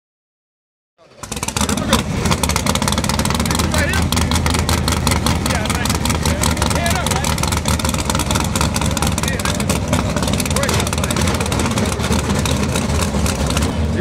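Loud, lopey rumble of drag race car engines running at idle, starting about a second in, steady with no revving.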